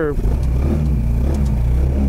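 BMS Sand Sniper 150 go-kart's 150cc engine running with a steady low drone while the kart rolls off a curb onto the road.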